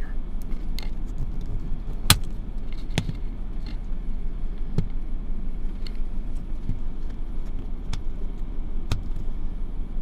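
Scattered plastic clicks and knocks, the loudest about two seconds in, as a dashcam and its suction-cup windshield mount are handled and fitted in place. Under them runs a steady low rumble inside the car's cabin.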